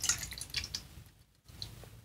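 Watery fermented tomato-seed mixture poured from a glass jar through a small mesh sieve into a stainless steel bowl, trickling and dripping.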